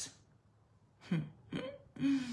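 A woman's two short throat sounds, a little under half a second apart, about a second in, with a breathy exhale starting right at the end.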